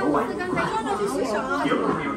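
Several people talking at once: unintelligible crowd chatter with overlapping voices.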